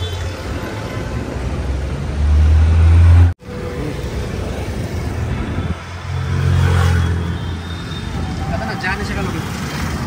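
BMW 220i's four-cylinder turbo-petrol engine heard from the tailpipe, a low steady exhaust hum that swells louder about two seconds in and stops abruptly a second later. The same low engine hum swells again around six to seven seconds in.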